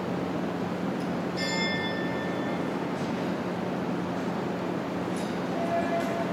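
Steady hum and rush of a large indoor ice rink hall, with a brief high metallic ring about a second and a half in.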